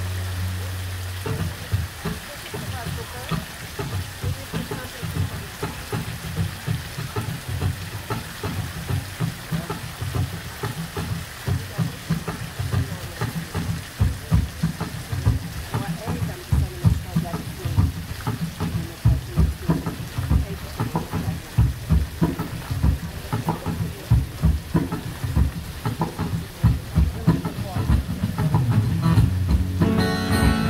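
A rain-like hiss of spray with irregular low thumping on the microphone runs throughout. Strummed acoustic and electric guitars come in about a second before the end.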